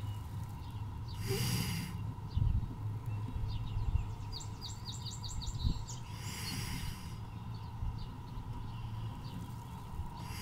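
Hen wood duck hissing twice on her nest, two breathy hisses about five seconds apart, each under a second long: a defensive threat at the intruder in the nest box.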